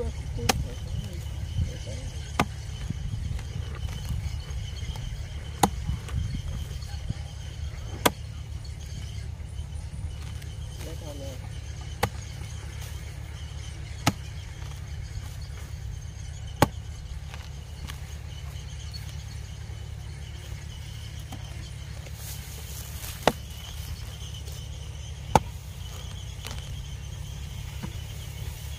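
Hoe blade chopping into the packed earth of a rice-paddy bank, about ten sharp strikes spaced irregularly a couple of seconds apart, with a longer pause past the middle, digging open a field-rat burrow. A steady low rumble sits under the strikes.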